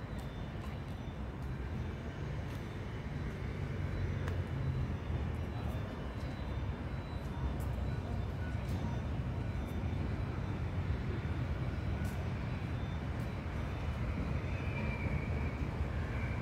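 Steady low rumble of outdoor urban background noise, without a clear single source.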